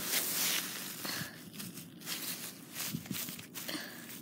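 Dry grass rustling and crackling close to the microphone as it is pushed through by hand. It is louder for about the first second, then drops to scattered small crackles.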